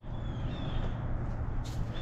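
Outdoor background ambience: a steady low rumble, with faint high bird chirps in the first second.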